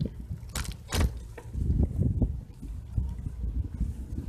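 Bicycle rolling over an asphalt path, heard as an uneven low rumble with wind buffeting the camera microphone. Two short rattles come about half a second and a second in.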